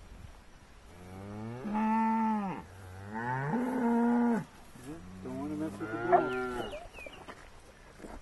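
Cattle mooing: three long moos, one after another, each lasting a second or more.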